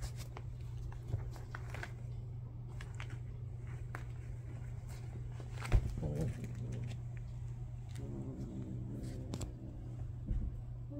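A cat tussling with a plush duck toy on bedding: scattered soft rustles and light knocks, with one sharp knock about six seconds in, over a steady low hum.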